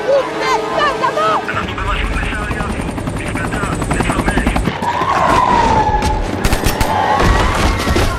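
Film battle sound mix: shouting and screaming voices at first, then a helicopter's rotor with rapid low pulses for a few seconds. A long rising-and-falling scream comes about five seconds in, and a few sharp bangs follow near the end.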